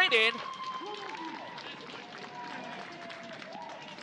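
A commentator's voice breaks off at the start, then the open-air ambience of an empty stadium with distant shouts and long calls from players on the pitch as a free kick goes in for a goal.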